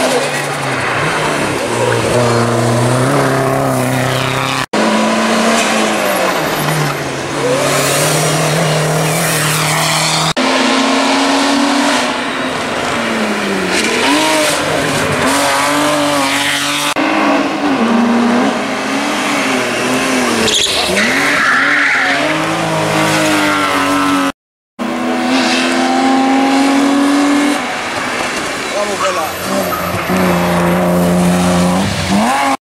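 Race cars climbing a tight mountain road one after another, their engines revving hard, rising and falling in pitch through gear shifts and corners. The sound breaks off abruptly at several cuts between cars.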